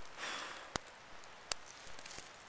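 A wood campfire crackling, with two sharp pops about three-quarters of a second apart, after a short sniff near the start.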